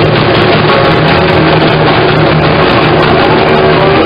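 Post-punk garage band playing live, recorded loud and muffled on a lo-fi bootleg, with guitars and drums in a dense wash over a held low bass note.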